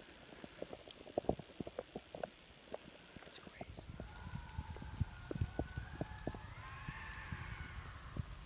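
Canada lynx calling: a faint, long, wavering yowl that starts about halfway through and rises and falls in pitch. Scattered sharp clicks and rustles close to the microphone run throughout.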